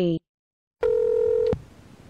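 A single electronic beep: one steady tone held for under a second, cut off with a click, then faint hiss.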